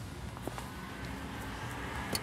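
Steady outdoor background noise with a low rumble, with a couple of faint clicks about half a second in.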